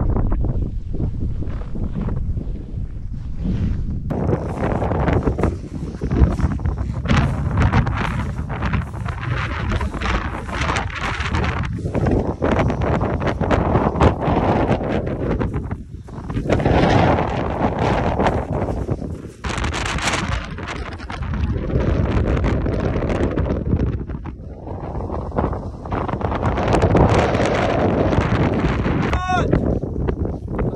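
Strong gusting wind buffeting the microphone on an exposed high-mountain ridge, surging and easing in waves.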